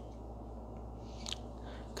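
Quiet room tone with a steady low hum, and one brief soft rustle a little past the middle.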